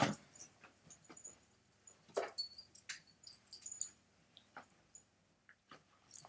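Faint scattered clicks, knocks and rustles of someone moving about and handling things off-camera, with one short falling pitched sound about two seconds in.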